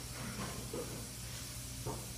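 Steady background hiss with a low hum, the room tone of a phone recording, with a few faint soft sounds and a small click near the end.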